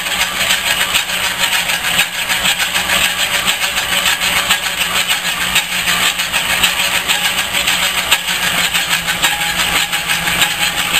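Metal lathe running, its tool bit turning a spinning metal workpiece: a steady mechanical whir with a low hum underneath and a dense, gritty hiss of cutting and gearing over it.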